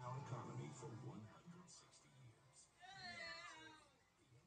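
A cat meowing in the room: one drawn-out, wavering meow about three seconds in, after a louder burst of voice or television sound at the start.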